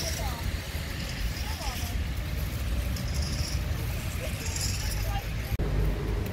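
Several garden rakes scraping and rustling through fallen leaves on grass in irregular strokes, over a steady low rumble and faint distant voices.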